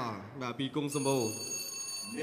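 Boxing ring bell ringing for about a second, a steady high metallic ring that starts about halfway in and stops abruptly, over a commentator's voice.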